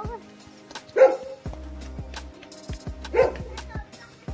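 A dog barking twice, short barks about a second in and again near three seconds, over background music with a repeating bass beat.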